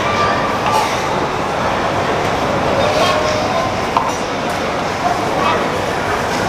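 Loud, steady background din of a busy shop, with indistinct voices in it. A single sharp click comes about four seconds in.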